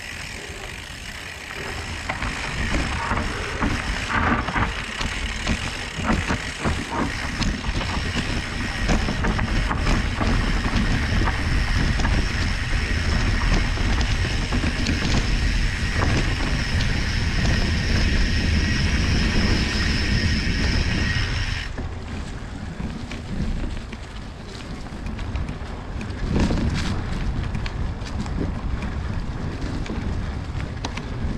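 Mountain bike ridden over a dirt trail strewn with dry leaves: tyres rolling and crunching, with many small knocks and rattles from the bike over bumps and wind rumbling on the microphone. A steady high whine runs through most of it and cuts off suddenly about two-thirds of the way in.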